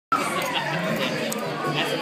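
Restaurant dining-room chatter: many voices talking at once, steady throughout.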